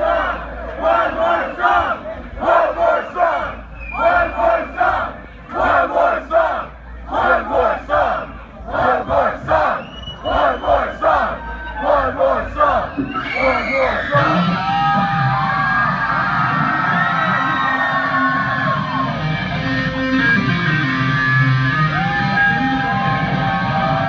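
A concert crowd chanting together in a steady rhythm, about one shout a second. About 14 seconds in, the chant gives way to sustained cheering and screaming over music.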